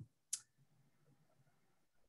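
A single brief click about a third of a second in, then near silence.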